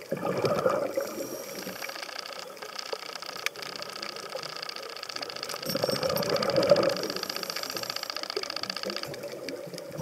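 Scuba diver breathing through a regulator underwater: two loud bursts of exhaled bubbles, at the start and about six seconds in, with a steady fast-ticking hiss between and after them.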